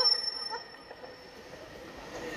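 Faint background noise of a large indoor hall with a thin steady high tone, as a voice trails off at the start; the PA system has dropped out.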